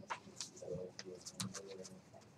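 Faint, irregular clicks and taps of computer keyboards and mice in a computer classroom, with a brief low, voice-like sound twice near the middle.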